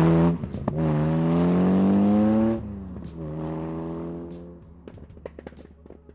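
The Busso V6 of an LB Specialist Cars STR (Lancia Stratos replica) accelerating hard through the gears: two long rising pulls, each ended by a brief break for an upshift, then a quieter, steadier pull that fades away as the car draws off.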